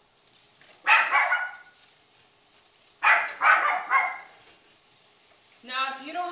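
A dog barking twice in the background, about two seconds apart, each bark short and sharp-onset.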